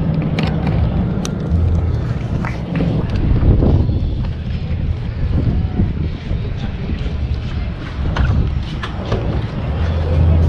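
Wind buffeting the microphone, a heavy low rumble that rises and falls, with faint voices now and then.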